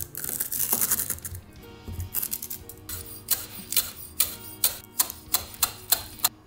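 Knife chopping dried nori finely on an end-grain wooden cutting board: a run of sharp knocks on the wood, quick and uneven at first, then a steadier chop about three times a second. Background music plays underneath.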